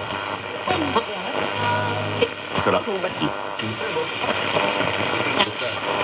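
A Sony CF-1980V mono radio-cassette's loudspeaker as its FM dial is tuned across the band: hiss and static between stations, with snatches of broadcast voices coming and going.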